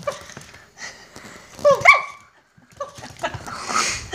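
A small dog gives one short, high bark about two seconds in, with faint scattered ticks around it.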